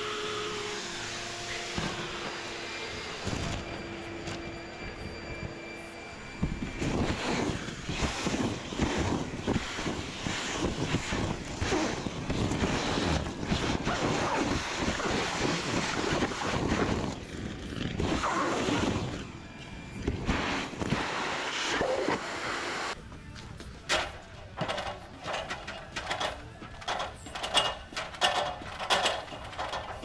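Gutter vacuum running, its pole tip sucking wet leaves and debris out of a roof gutter: a steady motor tone under a dense rattle of debris through the tube. About three-quarters of the way through, this gives way to a run of sharp clicks and knocks.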